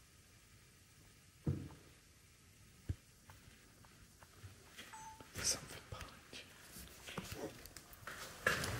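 Quiet room with a single dull thump, a sharp tap a second and a half later, then faint, uneven rustling and light knocks of movement.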